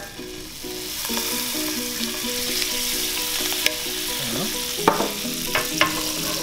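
Butter melting and sizzling in a hot nonstick frying pan, the hiss building over the first second and then holding steady. A few sharp clicks come near the end.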